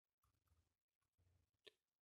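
Near silence, with one faint short click near the end.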